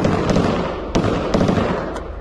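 Gunfire: three sharp shots, one at the start and two about a second in, each trailing off in a lingering echo.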